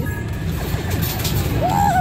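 Arcade background: electronic game music over the steady din of arcade machines. A voice comes in near the end.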